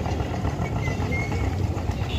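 Street traffic: a steady engine rumble from vehicles on the road.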